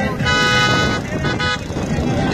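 A vehicle horn sounds: one held blast of well under a second, then a short second toot, over the noise of the moving convoy's vehicles.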